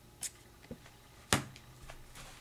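Plastic playing cards being handled: a light brush about a quarter second in, one sharp click a little past the middle, and a few faint ticks between.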